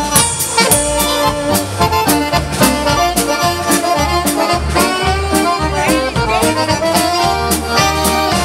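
Live band music led by a piano accordion, with a drum kit and bass keeping a steady dance beat.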